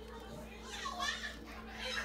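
A young child's voice in the background, calling out twice about a second apart, high-pitched and wavering up and down.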